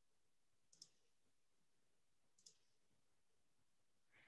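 Near silence with two faint computer-mouse clicks, one just under a second in and one about two and a half seconds in.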